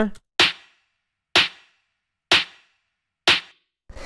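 Tech house clap-snare played solo: a punchy clap layered with a snare that has a short reverb. Four hits about a second apart, each with a short fading tail.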